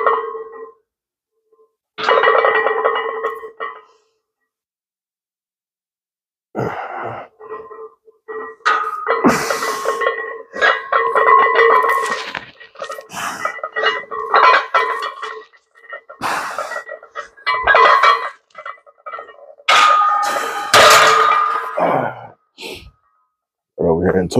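A man grunting and straining through a heavy barbell bench press set, in long vocal pushes broken by short pauses.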